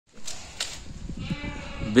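Young Beetal goat kids feeding on a bunch of fresh leaves: rustling and a few short clicks as they tug at it, with a faint bleat in the second half.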